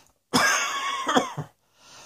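A person coughing: a loud, throaty cough starts about a third of a second in and breaks into two or three quick coughs. A short intake of breath follows near the end.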